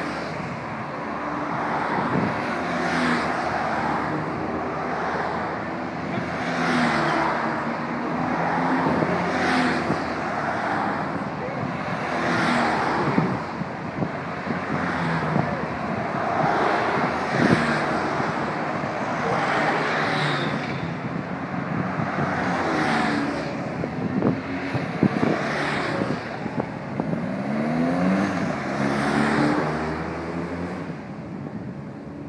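A motorcade of vans and SUVs driving past one after another, each vehicle's engine and tyre noise swelling and fading, about one every two to three seconds. Near the end one vehicle passes with a sweeping change in engine pitch.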